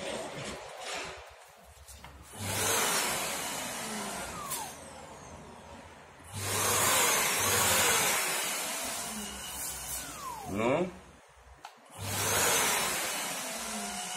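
Yokiji KS-01-150-50 brushless electric random orbital sander run three times off the surface, each time starting suddenly and winding down with a falling whine. With no load and no pad brake, the pad just spins freely like an angle grinder instead of orbiting.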